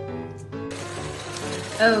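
Soft piano background music, cut off suddenly about two-thirds of a second in by the steady sizzle of a stew and gari mixture cooking on high heat in a pot as it is stirred with a wooden spatula.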